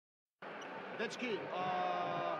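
Indoor sports-hall background noise, with a man calling "Guys" about halfway in. A steady held tone sets in just after.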